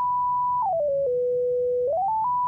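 A pure sine-wave test tone, pitch-corrected by Antares Auto-Tune Pro X at zero retune speed, snapped to the B minor scale. It holds a high note, then steps down quickly through several scale notes to the note an octave lower and holds there. Near the end it starts stepping back up.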